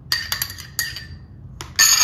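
A metal spoon clinking and scraping against a small glass dish as avocado is scraped out. About two seconds in comes a louder ringing glass clink, as the dish is set down on a stone countertop.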